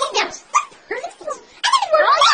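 A voice distorted by a voice-changer app effect, heard as a few short, high, yelp-like syllables.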